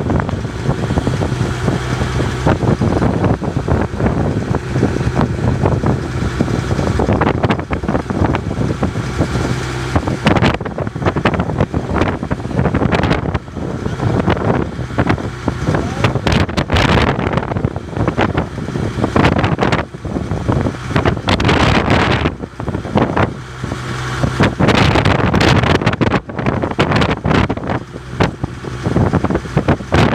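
Wind buffeting the microphone on a boat at sea, with a boat engine running steadily underneath and the wash of choppy water.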